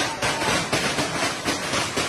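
Metal market tables being rattled and banged by hand, a fast continuous clatter of many knocks.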